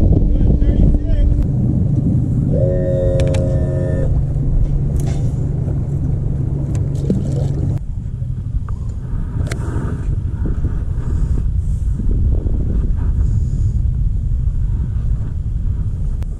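Mercury outboard motor running the boat slowly, a steady low drone with wind on the microphone; the engine note drops off about eight seconds in as the boat slows.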